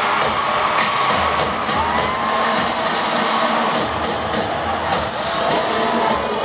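Loud live pop music with a steady beat, picked up in the arena by an audience member's camera, with the crowd cheering over it.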